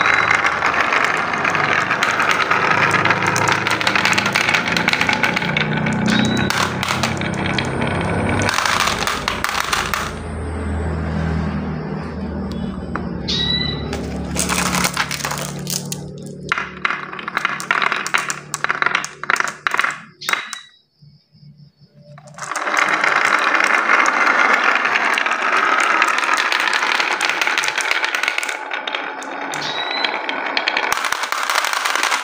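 Many marbles rolling and clacking down a wooden slope with a wavy carved groove, a dense rattle of small clicks. About two-thirds through it thins to a few clicks and briefly stops, then a fresh run of marbles clatters down.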